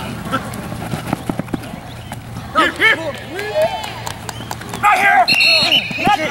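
Players and onlookers shouting during a flag football play, loudest about halfway through and again near the end, over a steady low hum with scattered sharp clicks and footfall-like knocks.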